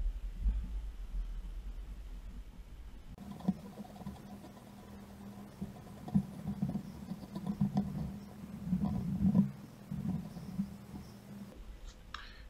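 Faint rustling and irregular small clicks of hands working thread and lead wire onto a bead-head hook in a fly-tying vise, close to the microphone, over a low steady hum from about three seconds in.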